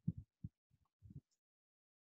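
A few soft, low thuds in quick succession during the first second or so, then quiet.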